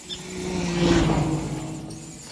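Fisher-Price toy remote-control car's small electric motor running as it drives across a tile floor. It is a steady hum that gets louder to about a second in, then eases off.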